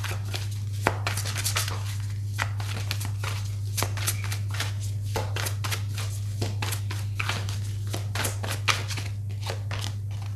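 Tarot-style cards being shuffled and handled: a long run of crisp, rapid clicks and rustles of card stock, over a steady low hum.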